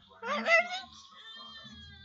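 A short, high-pitched meow-like call, rising and wavering, about a quarter second in, followed by faint thin high tones.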